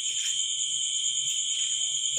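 A continuous high-pitched whine: one steady tone with a fainter, higher buzzing band above it, holding level and unbroken.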